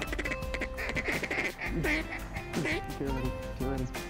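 A series of duck quacks over the first three seconds or so, over background music.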